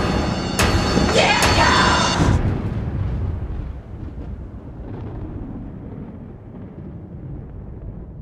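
Horror-trailer sound design: two sharp percussive hits with a rising, wavering pitched tone over the first two seconds, then a low rumbling boom that slowly fades away.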